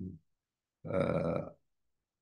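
A short, low, rough guttural sound from the man's throat, under a second long, about a second in, in a pause between sentences.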